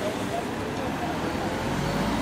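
Steady outdoor street noise from road traffic, with faint voices.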